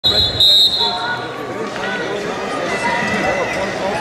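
A referee's whistle blows to start the wrestling bout for the first half second or so, then many overlapping voices of the arena crowd and coaches call out.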